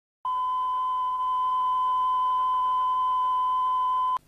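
A single steady 1 kHz reference tone, the kind of line-up tone recorded at the head of a broadcast tape, starting abruptly a moment in and holding one pitch at a loud, even level.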